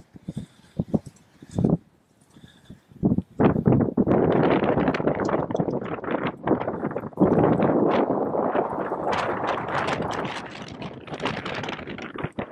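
Horse cantering over turf, hoofbeats thudding as separate knocks at first. From about three and a half seconds in they are joined by a loud rushing noise that carries on to the end.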